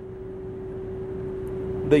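The coach's rear-mounted Cummins ISB 5.9-litre turbo diesel idling, heard from the driver's cab as a steady running noise with one constant hum held throughout.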